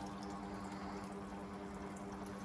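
Desktop filament extrusion line's electric motors running: a steady hum of a few even tones over a light hiss.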